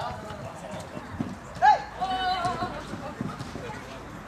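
Players' shouts on a futsal court: one loud, short call a little under two seconds in, followed at once by a longer held call, with a few thuds of play in between.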